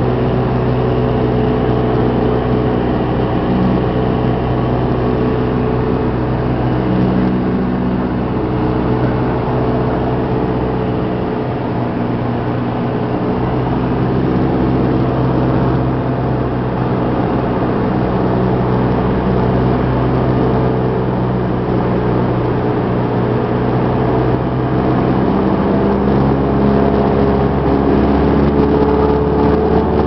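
Cessna 172S's four-cylinder Lycoming engine and propeller droning steadily in flight, heard loud and close. The engine note shifts a few seconds before the end.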